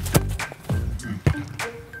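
A football struck hard once with the instep on a free kick, a sharp thud just after the start, over steady background hip-hop music.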